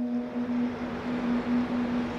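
Steady outdoor city ambience, a continuous wash of distant traffic-like noise, with one low electronic drone note held over it.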